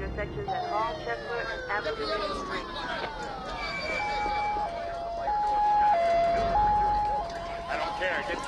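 Police sirens: several sirens sliding down in pitch, then from about four seconds in a two-tone siren switching between a high and a low note roughly every half second, with voices calling in the background.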